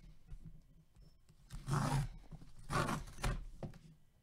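The black paper sleeve of a sealed trading-card pack being torn open in two rough tearing pulls, the first a little under two seconds in and the second about a second later.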